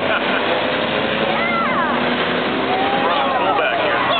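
Stock cars and a school bus racing on an oval track, their engines running together in a steady wash of noise, with spectators' voices calling out over it.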